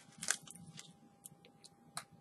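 Faint, sparse crunching of a crisp Pocky biscuit stick being chewed: a few scattered small crackles.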